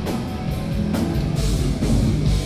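Heavy metal band playing live: distorted electric guitars and bass holding low notes over a drum kit, with drum and cymbal hits about twice a second.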